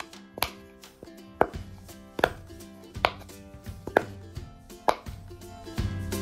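Silicone dots of a Sensory Pops Turtle baby toy being pushed through one at a time, making six sharp pops about a second apart.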